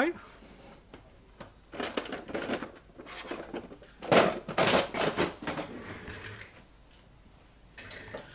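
Hard objects being handled and knocked about on a workbench for a few seconds: irregular clattering and scraping, loudest about four seconds in, then quiet.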